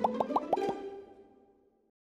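A rapid run of about five cartoon-style plop sound effects, one after another in the first second, each short and pitched, ringing briefly and fading to silence.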